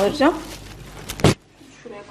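Plastic grocery bags rustling as bagged food is handled and set down, with one short, loud noise a little over a second in.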